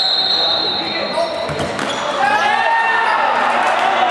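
A referee's whistle blast held for about a second, then the thud of a handball on the court, followed by players' shouts echoing in a sports hall.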